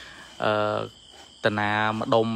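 Crickets chirping steadily in the background, with a man's voice speaking in two short stretches over them.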